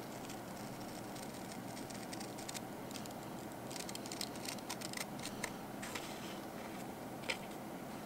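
Small scissors snipping through a paper sticker sheet in a run of short, irregular cuts, the busiest stretch a little past the middle and one sharper snip near the end.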